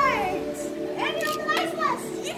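Children's high-pitched voices calling out, their pitch sliding up and down, in two short stretches at the start and from about a second in. A steady background of held tones runs underneath.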